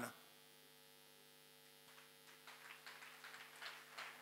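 Near silence: a faint, steady electrical mains hum.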